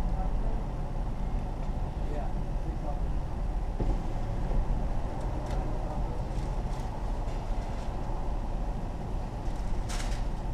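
Steady low rumble of a vehicle idling, heard from inside the cabin, with a few faint short clicks.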